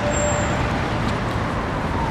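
Steady road traffic noise, with a faint tone slowly falling in pitch through it.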